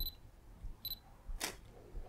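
Olympus OM-1 mirrorless camera: two short high electronic beeps, the first at the start and the second a little under a second in. About a second and a half in comes a single sharp shutter click as a shot is taken.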